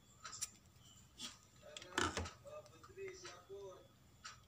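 Scissors snipping through nylon crochet yarn, a short sharp double click about two seconds in, amid lighter clicks of the hook and scissors being handled. A faint voice in the background.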